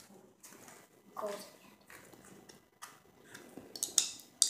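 A golden Easter egg being opened by hand: small clicks and light rattles, with a sharper click near the end as it comes apart.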